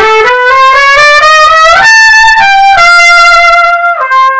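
Solo trumpet playing a smooth, connected phrase that climbs note by note to a high held note about two seconds in, then steps down to a long held note. It is the player's own dolce reading of a passage written forte, shaped beyond what is printed.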